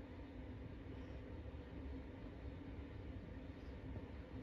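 Quiet room tone: a faint steady low hum with light hiss and no distinct events.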